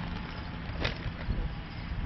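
Outdoor background noise dominated by a distant chainsaw running, with a single sharp click just under a second in.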